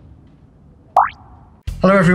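A quick rising-pitch transition sound effect about a second in: a sharp click that sweeps up like a short boing, over faint background noise.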